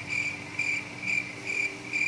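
A cricket chirping in an even series, about two short, high chirps a second.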